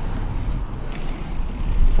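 Wind and rolling noise picked up by a camera on a mountain bike moving down an asphalt street: a steady low rumble with a faint hiss over it.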